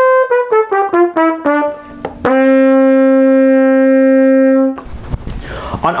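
A trumpet plays a descending scale of short notes down to its low D, then holds the low D steadily for about two and a half seconds. Played without the third valve slide kicked out, this low D sounds sharp, a known intonation tendency of the trumpet.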